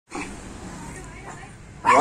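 A poodle barks once, sharply, right at the end, after a faint background murmur.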